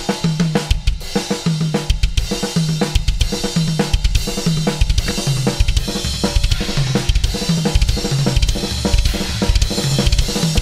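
Acoustic drum kit playing a metal fill built on a six-stroke roll (kick with crash, two snare strokes, two high-tom strokes, one more left, then two kicks), looped at a fast tempo. Cymbals wash over the repeating pattern.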